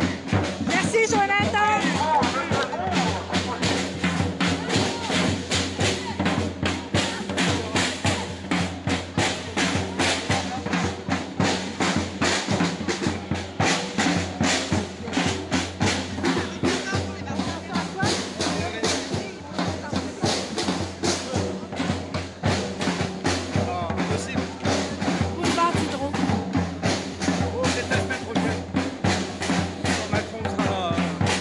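Music with a steady, fast drum beat, with voices over it.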